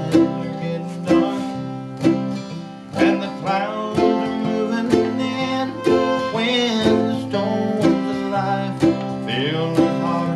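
Acoustic guitar and mandolin playing a bluegrass gospel tune together, with no singing: the guitar strums chords with strong strokes about once a second while the mandolin picks over them.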